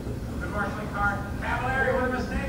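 Quiet speech over a low, steady hum.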